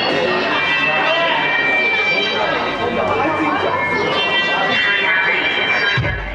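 Music with sustained high tones, mixed with voices shouting and calling out over it, loud and steady throughout.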